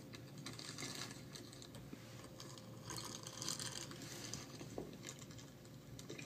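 Faint clatter of computer keyboard typing, in two short runs, about half a second in and again around three seconds in.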